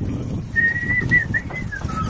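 A high, clear whistle starts about half a second in: one held note, then a few short notes, over a low background rumble.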